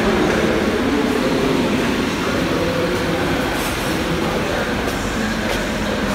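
Steady hum and hiss of a large canteen hall, with faint distant voices and a few light clicks of crockery or utensils in the second half.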